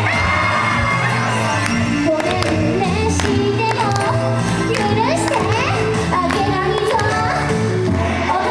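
Live J-pop idol song: an upbeat backing track over loudspeakers with a woman singing into a microphone, while a crowd of fans shouts and cheers along.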